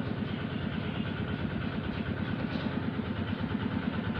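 A small motor running steadily with a fast, even pulse.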